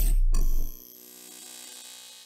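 Logo-reveal sound effect: a deep boom that cuts off under a second in, followed by a faint ringing shimmer that fades away.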